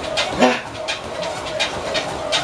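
A man breathing hard in short, rapid gasps, about one or two a second, one of them voiced; the feigned, labored breathing of a pretended breathing attack.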